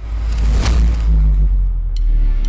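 Cinematic logo-sting sound design: a deep, sustained bass rumble with a whoosh sweeping through about two-thirds of a second in.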